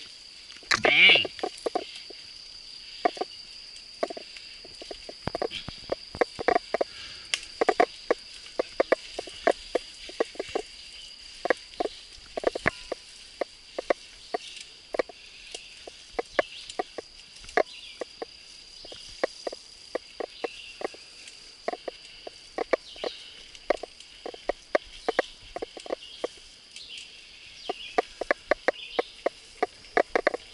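A mountain bike clattering along a bumpy dirt trail, with frequent irregular sharp knocks and rattles, under a steady high insect drone. About a second in there is one louder sound that sweeps down in pitch.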